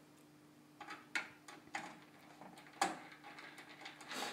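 A handful of light clicks and taps from hands handling the metal PCIe card bracket and screw area of a steel PC case, starting about a second in, over a faint steady hum.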